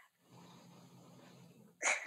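A person's short, breathy intake of breath near the end. Before it there is only a faint hiss.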